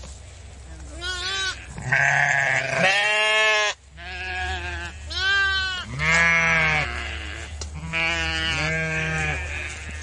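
Goat bleating, a series of about six wavering calls of varying length, over a steady low hum.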